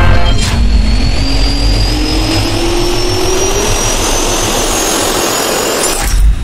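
Jet engine spool-up sound effect: a turbine whine rising steadily in pitch over a loud, even rush of air.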